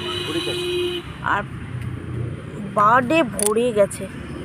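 A vehicle horn sounds one steady note for about a second and cuts off, over the low hum of road traffic; a voice follows near the end.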